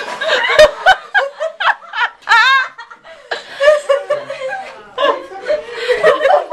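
Several people laughing in repeated bursts.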